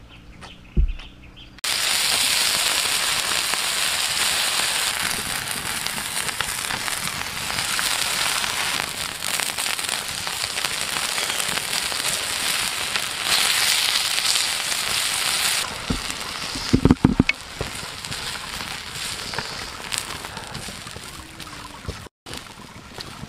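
Chives and chili oil sizzling and crackling on a hot stone slab over a wood fire. The sizzle is loud until about two-thirds of the way through, then drops to a quieter sizzle with a few low knocks; there is also a single thump about a second in.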